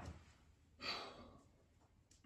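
A woman's short sigh, a single breath out about a second in, with near silence around it.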